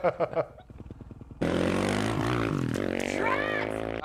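A dirt bike's engine comes in suddenly about a third of the way in and runs loud and steady, its pitch dipping and then rising.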